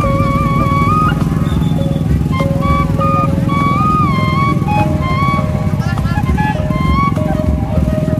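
Loud amplified music from a truck-mounted loudspeaker stack: a high, sustained melody with wavering, gliding notes over a heavy, dense low beat.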